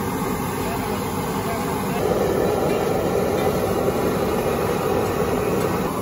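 Kachoris deep-frying in a wok of hot oil: a steady sizzle that grows a little louder about two seconds in.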